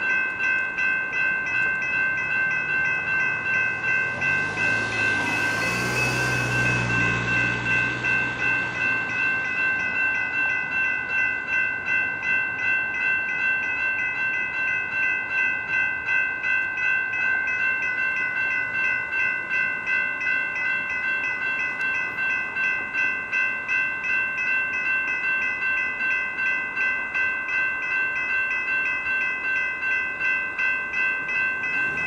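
Railroad grade-crossing warning bell dinging in a steady, even rhythm, the signal that a train is approaching. About five to eight seconds in, a low rumble and hiss swells and fades as a vehicle passes.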